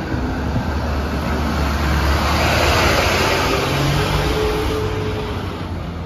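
Armoured security van driving slowly past on a cobbled street, its engine rumbling and tyres rolling over the cobbles, loudest about halfway through as it comes alongside.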